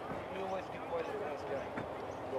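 Field-side sound of a rugby league match: players and onlookers calling out, with a few dull thuds, one near the start, one about halfway and one near the end.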